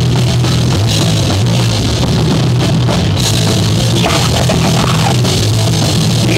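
A live punk rock band playing: distorted electric guitars and bass over a drum kit that is pounded hard, with the drums loud and close. The music is loud and unbroken.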